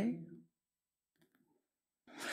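A man's voice trailing off at the end of a sentence, then near silence: a pause in speech.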